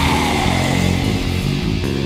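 Death/thrash metal from a 1998 demo tape recording: distorted electric guitar playing sustained low chords, with a high note sliding down in pitch over the first second.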